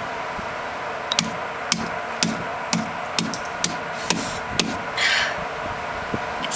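A green coconut being struck against a hard ledge to crack it open: a run of about eight sharp knocks, roughly two a second, the tough husk holding. A short rustling hiss follows near the end.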